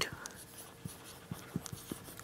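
Felt-tip marker writing on a whiteboard: a few faint, soft ticks and strokes.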